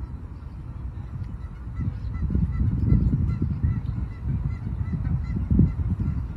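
Wind buffeting the microphone in gusts, loudest around the middle and again near the end, with faint repeated honking of geese.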